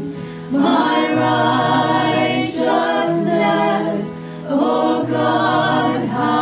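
A small group of mixed voices singing a slow worship song in harmony, with acoustic guitar accompaniment. There are brief pauses between sung phrases at the start and about four seconds in.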